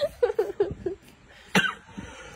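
A person's voice making a few short, clipped sounds, then a single cough about one and a half seconds in.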